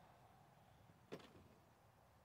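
Near silence, broken once about a second in by a single brief click, a small knock of handled metal engine parts.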